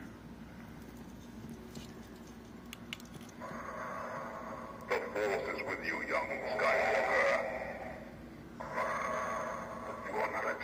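The small built-in speaker of an animated Hallmark Darth Vader Christmas ornament playing its sound clip of Darth Vader's voice, thin and tinny. It starts about three and a half seconds in after a few seconds of quiet room tone with a couple of light clicks.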